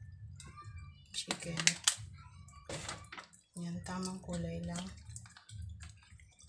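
Hands squishing and rubbing a raw whole chicken wet with soy sauce marinade in a plastic tub, in short wet squelches, the loudest a little over a second in and another around three seconds.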